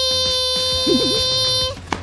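A high-pitched, childlike voice holding a long, drawn-out call of "Mommy" on one steady note, which breaks off shortly before the end.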